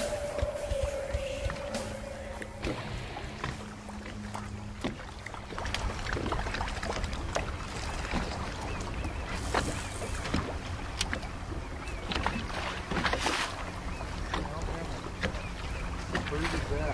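Sounds of fishing from a boat while casting: a steady low hum with scattered clicks and knocks from rods, reels and the deck, and a couple of short splash-like hisses about ten and thirteen seconds in. A held music tone fades out in the first couple of seconds.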